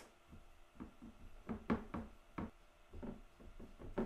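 Fingers pressing a crumbly pecan crust into a ceramic baking dish: a run of irregular soft knocks and taps as fingertips strike the dish, the loudest a little under halfway through.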